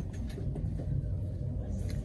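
Steady low rumble of a clothing store's background noise in a fitting room, with faint rustling as the tweed coat's collar is handled.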